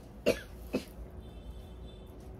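A woman coughing twice, two short coughs about half a second apart in the first second.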